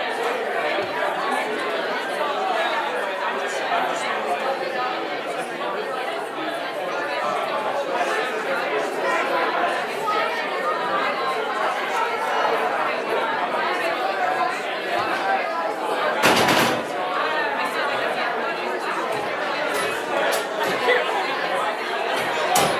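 Many people chatting at once in a large hall, a steady mingle of overlapping conversations with no single voice standing out. A single thump sounds about three-quarters of the way through.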